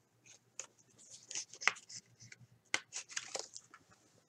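Clear plastic card sleeve and rigid toploader rustling and scraping as a trading card is slid into them: a run of faint, irregular crinkles and scrapes, the strongest a little before and after the middle.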